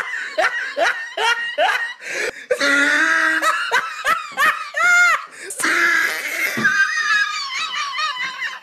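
Hearty human laughter in quick repeated bursts, with a high squeaky note about five seconds in.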